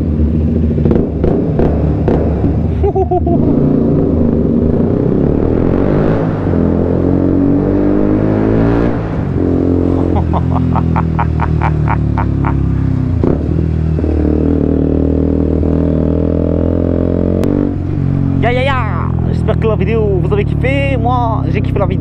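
KTM Duke 125's single-cylinder four-stroke engine with an Akrapovic exhaust, accelerating hard through the gears. Its pitch climbs, then falls back at each upshift, about 9 and 17 seconds in.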